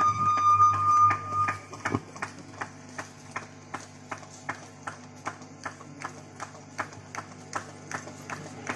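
Wooden hand clappers with metal jingles (kartal) struck in an even beat, about three sharp clicks a second, over a low steady hum. A loud held high tone fades out in the first second and a half.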